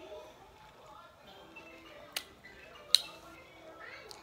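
A woman's faint, wordless murmuring and humming as she eats a mouthful of hot food, with two sharp clicks about two and three seconds in.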